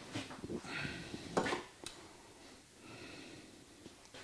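Light clicks and knocks of small metal parts being handled on a metal-topped workbench, with one sharper knock about a second and a half in, as a steel balance weight with a brass sleeve is stood on the scale's platter.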